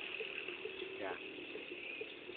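Quiet outdoor background with a steady high-pitched drone, and one short spoken 'yeah' about a second in.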